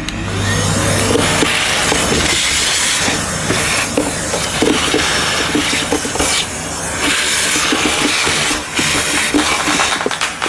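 Handheld vacuum cleaner running with its nozzle in a cylinder vacuum's dust-bag compartment: a steady suction hiss with many small clicks of grit being sucked up. The sound dips briefly a few times as the nozzle is moved about.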